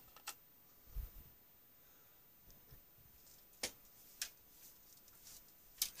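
Mostly quiet room with a soft low thump about a second in and a few sharp faint clicks spread through the rest, from small objects being handled at a desk.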